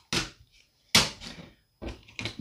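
Two sharp knocks about a second apart, then a softer thump near the end: hard paint sample swatches being put down and handled on a tabletop.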